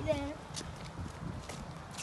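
Footsteps on a wet paved path, a soft step about every half second.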